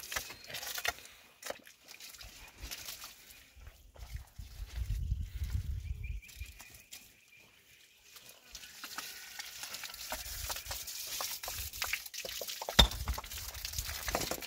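Water spraying from a garden hose onto stone, a steady hiss that sets in about halfway through. A single sharp knock comes near the end.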